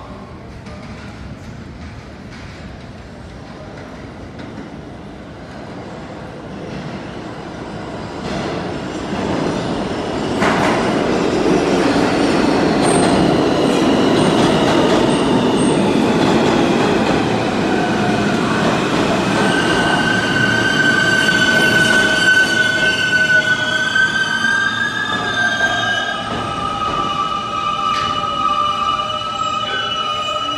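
Siemens-propulsion R160 New York City subway trains pulling into the station: the rumble of steel wheels on the rails builds up over several seconds and turns loud, then the traction motors whine in several steady tones that slowly shift in pitch as the train brakes.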